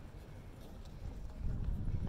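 Faint, irregular footsteps with a low rumble of wind on the phone's microphone.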